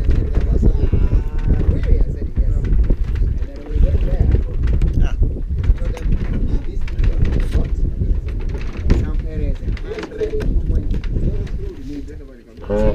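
Wooden boat under way: a loud, dense low rumble of its engine and the water along the hull, with wind buffeting the microphone.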